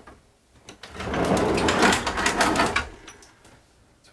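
A convertible wooden table section with an espresso machine on it being slid across to the other side. It gives a rough scraping rumble that starts about a second in and lasts about two seconds, then fades.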